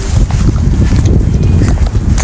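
Wind blowing across the microphone: a loud, uneven low rumble.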